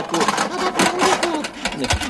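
Pots and pans rattling in a rapid, continuous clatter, as when they are knocked about on a kitchen stove, with a heavier thump just before the end.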